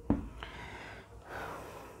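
A marker taps once against a whiteboard, then a man breathes audibly twice, two soft breaths.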